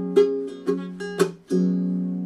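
Baritone ukulele tuned in fifths, a semitone low (B, F♯, D♭, A♭), strummed: about five quick chord strums, the last one about a second and a half in left ringing and slowly fading.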